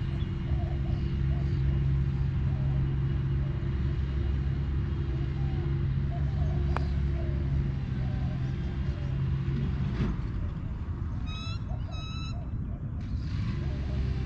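A steady low mechanical hum runs throughout. About seven seconds in comes one sharp click of a putter face striking a golf ball, and near the end a bird gives a short series of chirps.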